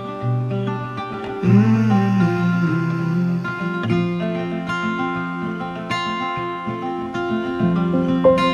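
Song accompaniment led by acoustic guitar, plucked and strummed chords at a slow, relaxed pace.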